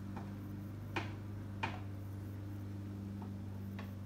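A few light clicks and taps from painting tools being handled at the work table, the two loudest about one and one and a half seconds in, over a steady low hum.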